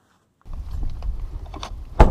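After a moment of dead silence, a low rumble of wind and handling noise on a handheld camera's microphone, with a few faint knocks. A sharp, loud knock comes right at the end.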